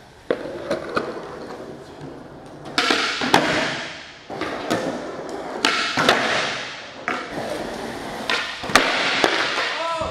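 Skateboard rolling on a smooth concrete floor, with sharp clacks of the board popping and landing several times.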